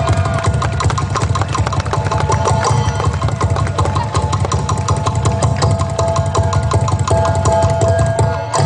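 Ifugao gong music: fast, steady strikes over ringing metallic tones and a heavy low rumble.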